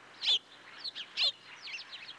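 Birds chirping: short, sharply falling calls, two loud ones about a second apart with fainter chirps between them, over a faint steady hiss.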